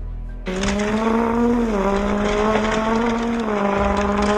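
Dubbed race-car engine sound effect, a steady high-revving note that starts about half a second in and steps down, up and down again in pitch, over background music.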